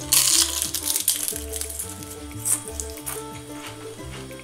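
Crisp baked kale chip crunching as it is bitten and chewed: a loud crunch at the start, then a few softer crunches, over background music. The crunch shows the chips are baked crisp.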